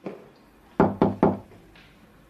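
Three quick, loud knocks on a door about a second in, preceded by a fainter tap at the start.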